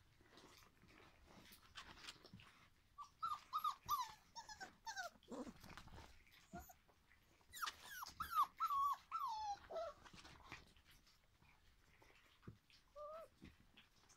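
Young puppies whining and yelping in short, high, falling cries: one bunch about three seconds in, a louder bunch from about seven to ten seconds in, and a single brief cry near the end.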